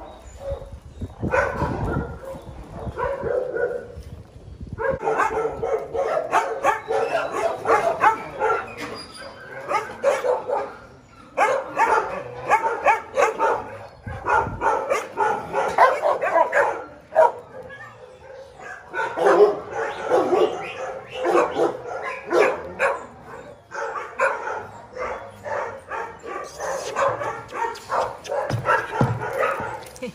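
Several dogs barking, long stretches of rapid, repeated barks broken by a few short lulls.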